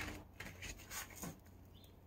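Quiet room tone with a low steady hum and a few faint, short clicks and rustles.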